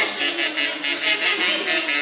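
Live band playing a huaylarsh: saxophones and other reed instruments carry the melody over a quick, even beat.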